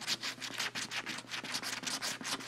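A coin scratching the coating off a scratch-off lottery ticket in rapid back-and-forth strokes, about ten a second.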